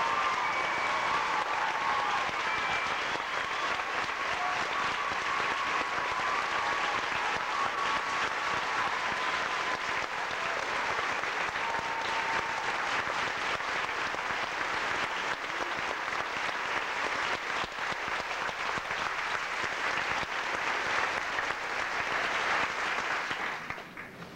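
Audience applauding steadily, with a few brief whistles over it in the first seconds. The applause dies away just before the end.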